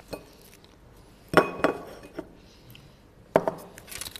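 A small microphone being picked up and handled close to the mic, giving sharp knocks with a brief ringing clink. The loudest comes about a second and a half in and another near the end.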